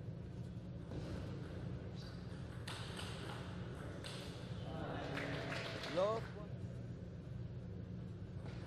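Table tennis rally: light clicks of the ball off paddles and table over a steady low hall hum. About six seconds in comes a short pitched sound that rises quickly, the loudest moment, as the point ends.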